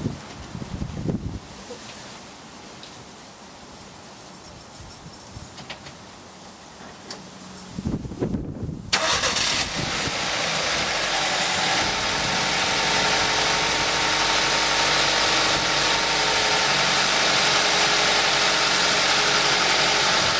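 Nissan Micra K11 four-cylinder petrol engine, heard with the bonnet open, starting on its original HT leads. It catches after a brief crank about nine seconds in and settles into a steady, pretty smooth idle.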